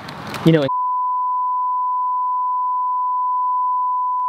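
Censor bleep: a single steady, high-pitched beep tone laid over the speech, starting just under a second in and holding unchanged, blotting out the spoken words.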